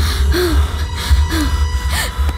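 Quick, heavy panting breaths with short voiced catches, like a frightened person gasping for air, over a low, steady musical drone.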